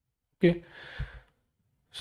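A person's audible exhale, a breathy sigh just after a spoken "okay", with a soft low thump about a second in.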